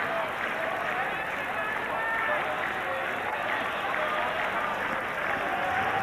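Cricket stadium crowd making a steady din of cheering and clapping, with scattered individual shouts rising above it.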